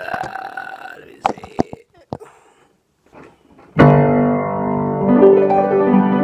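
A few knocks and clicks, then about four seconds in an acoustic piano comes in loudly with a full chord and goes on playing, notes moving over the held harmony.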